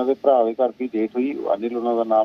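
Speech only: a man talking steadily, sounding narrow as if over a telephone line.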